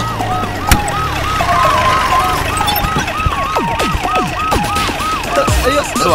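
Siren yelping in a fast rise-and-fall, about four cycles a second, with several falling swoops lower in pitch in the second half.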